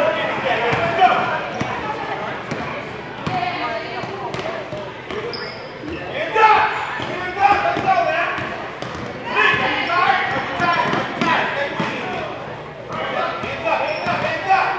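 Basketball dribbled on a hardwood gym floor, the bounces echoing in a large hall, with voices shouting in bursts over the play.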